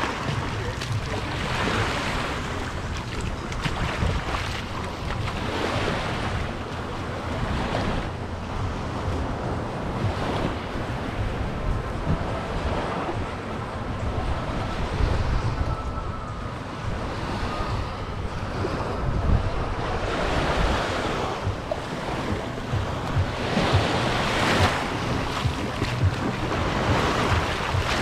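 Small sea waves lapping and washing up on a sandy shore, each wash swelling and fading every few seconds, with wind rumbling on the microphone.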